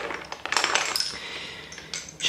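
Lace bobbins clicking and clacking against each other in quick, irregular runs as the pairs are crossed and passed along in cloth stitch, with a denser cluster of clicks a little after the start.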